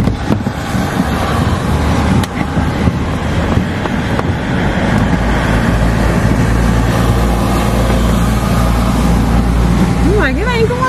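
Car engine idling, heard from inside the cabin, with a steady low hum and a wash of outside road noise, broken by a few light clicks and knocks.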